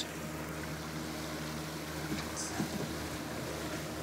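Boat's Honda outboard engine idling, a steady low hum over a light hiss of wind and water.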